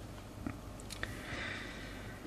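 A few small, faint clicks, two of them about half a second apart near the middle, over a low steady hum, with a brief soft hiss shortly after.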